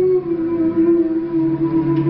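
Slow, sustained music: a held note that steps down slightly just after the start, over lower held tones.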